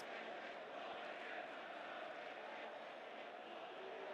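Faint, steady murmur of a large football stadium crowd, heard through the TV broadcast's field sound.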